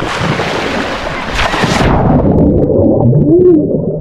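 A person plunging into a swimming pool with the camera: a loud splash and rush of water for about two seconds, then muffled underwater churning of bubbles as the camera stays submerged.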